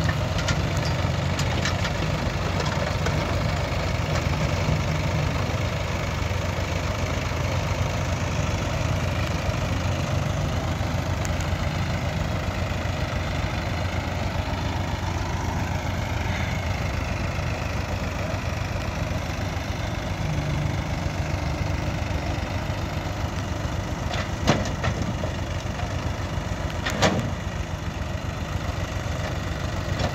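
JCB backhoe loader's diesel engine running steadily while its front bucket loads soil into a tractor trolley, with two sharp knocks near the end.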